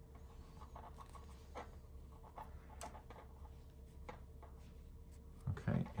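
Knitting needles and yarn being worked by hand: faint, scattered light clicks and rubbing as stitches are knitted together, over a low steady hum.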